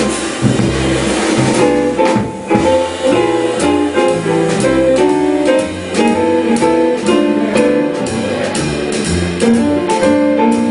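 Live jazz trio playing an instrumental passage without vocals: plucked upright bass moving note to note under piano chords, with drums and cymbals keeping time.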